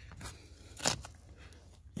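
Hands handling a seat cover's hook-and-loop straps and fabric: quiet rustling with one short, sharp crackle a little under a second in.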